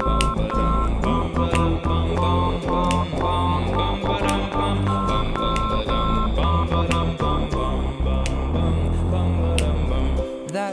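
A tune made of censor bleep tones: short steady beeps at two or three pitches near 1 kHz, in a rhythm, over a backing track with a steady beat and bass.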